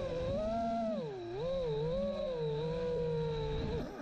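FPV quadcopter motors and propellers heard through the onboard camera, their pitch wavering up and down with the throttle. The sound cuts off near the end as the quad crashes into the grass.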